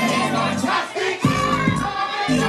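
Hip-hop music playing with a crowd of partygoers singing and shouting along over it.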